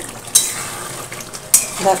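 A metal spatula scraping and clinking against a metal pot as a thick chicken and potato curry is stirred, with two sharp scrapes about a second apart. A steady sizzle of the gravy cooking down runs beneath them.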